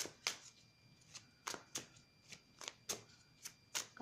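A deck of cards being shuffled by hand: a run of faint, sharp card snaps, about ten at an uneven pace.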